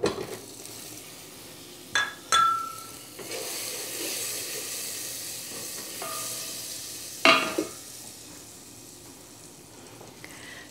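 Butter sizzling softly as it melts in an enamelware saucepan, with a wooden spatula knocking against the pot twice about two seconds in, leaving a brief ringing tone, and again about seven seconds in.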